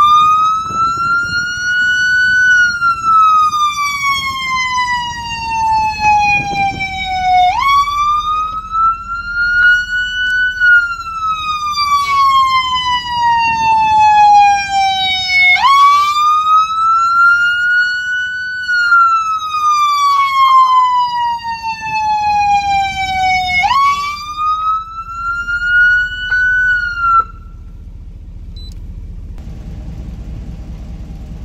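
Feniex electronic police siren sounding a slow wail through its siren speaker. Each cycle jumps up, climbs for about two and a half seconds, then falls for about five seconds, repeating roughly every eight seconds. It cuts off suddenly near the end.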